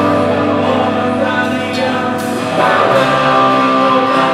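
A live rock band playing electric guitars and acoustic guitar, with singing; the bass line changes about three seconds in.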